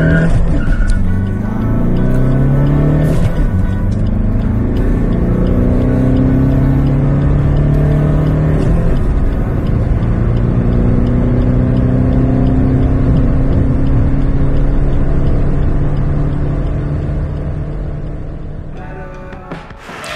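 Tuned Suzuki S-Cross 1.6 DDiS four-cylinder turbodiesel under full-throttle acceleration. The engine note climbs in pitch, drops at gear changes about three and nine seconds in, climbs again, then fades out near the end.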